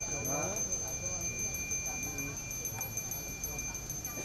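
Balinese priest's hand bell (genta) rung continuously: a steady high ring kept going by rapid, even strokes of the clapper, which sets in suddenly at the start.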